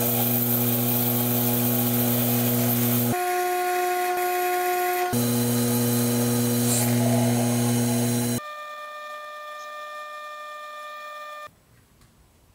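Mini metal lathe running with a steady motor whine while a brass workpiece is turned, heard in abruptly cut segments. The pitch shifts about three seconds in and back about two seconds later. About eight seconds in it drops to a quieter, higher hum, which stops shortly before the end.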